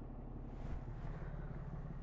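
Steady low hum of the truck's 6.7 L Cummins inline-six turbo diesel idling, heard from inside the cab.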